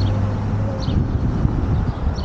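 Wind rumbling over the microphone of a bicycle-mounted camera while riding, with road noise. A low steady vehicle-engine hum fades out about a second in, and a short high chirp repeats about once a second.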